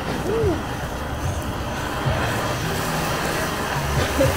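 Butane blowtorch on a gas canister burning with a steady hiss as its flame sears a burger patty on a metal sheet pan.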